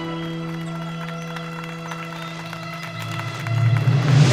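Dramatic background score: sustained held chords, with low notes building in loudness toward the end into a rising swell.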